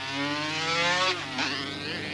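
Motorcycle engine accelerating hard: the revs climb for about a second, drop, and climb again.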